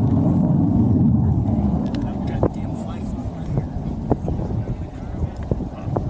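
Distant fighter jet engine rumbling overhead, a low roar that is loudest at first and eases off after about two seconds as the jet draws away.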